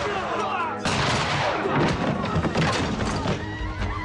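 Panicked crowd screaming and shouting over a dramatic film score, with thuds and bangs in the mix; the din swells about a second in.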